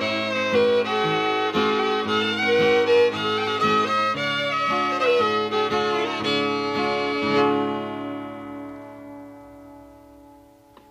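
Old-time fiddle with acoustic guitar backing playing the last bars of a tune, the guitar strumming a steady beat under the fiddle melody. About seven and a half seconds in they land on a final held note that rings and fades away.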